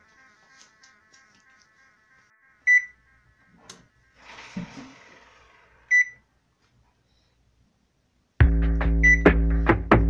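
Two short, high electronic beeps from an electric oven's control panel, about three seconds apart, as the bake temperature is keyed in, with a soft rustle between them. Loud background music with a beat cuts in near the end.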